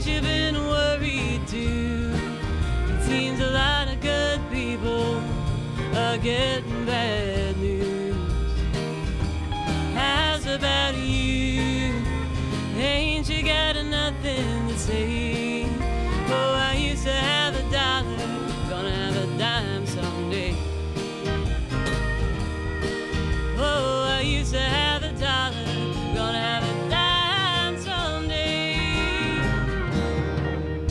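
Live country band music: acoustic guitar, electric bass and drum kit playing together, with a wavering melody line on top.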